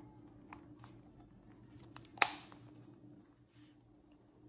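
Plastic Easter egg being pressed shut over a tight load of Starburst candies: a few light clicks, then one sharp snap about two seconds in as the halves click together, followed by a brief rustle. A faint steady hum runs underneath.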